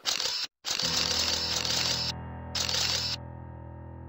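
Editing sound effects for a title transition: a short hit, then two bursts of bright, hissing, camera-flash-like noise, the first about a second and a half long and the second about half a second. Under them a piece of music holds a steady low chord.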